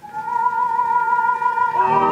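Orchestral music played from a 1947 Columbia 78 rpm record: a single steady high note is held, and the fuller orchestra comes in with a sustained chord near the end.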